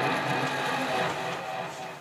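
A sustained, steady-pitched sound of several tones held together, slowly fading away.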